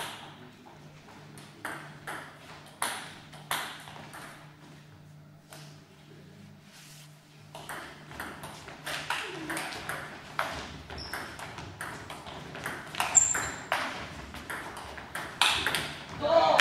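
Table tennis ball clicking off paddles and the table. There are a few scattered hits in the first half, then a quick rally of clicks through the second half.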